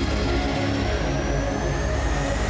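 Theme music of a television news bulletin's opening ident, with a pulsing bass and a thin electronic tone that rises slowly in pitch.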